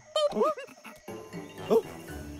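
A cartoon monkey character's short wordless yelps, quick squeaky calls that swoop up and down in pitch, soon after the start and again near the end, over light background music.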